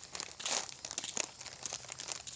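Irregular rustling and crinkling with small crackles, loudest about half a second in.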